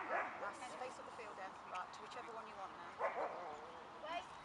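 A dog barking: two short barks, one right at the start and one about three seconds in, over faint talk.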